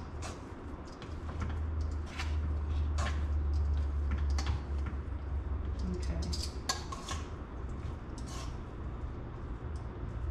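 Metal tongs clinking and scraping against a metal mixing bowl while tossing diced raw beef in almond flour, in irregular short clicks, over a steady low hum.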